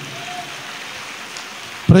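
A steady, even hiss of background noise in a large gathering, with a faint short tone about a quarter second in.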